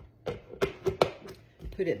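Clear plastic vented lid being set and pressed onto a two-quart plastic micro cooker: a few sharp plastic clicks and knocks within about a second.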